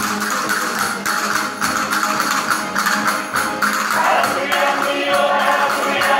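Spanish folk song: a mixed group singing together over plucked bandurrias and lutes, with a steady percussion beat. About four seconds in a higher, brighter vocal part comes in.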